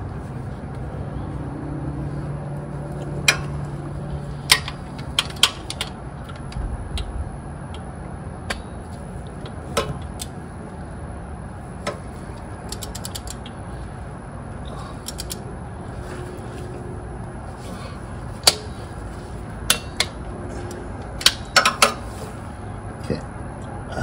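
Hand-tool work: a socket ratchet clicking in short quick runs, among scattered sharp clinks and knocks of tools and parts, with a low hum in the first few seconds.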